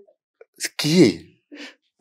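A single short, breathy burst of a person's voice about a second in, with silence on either side of it.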